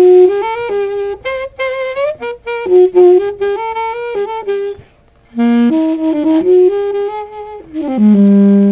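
Saxophone played inside a saxophone silencer case, a melodic phrase of connected notes that breaks off for about half a second a little before halfway, then goes on with another phrase.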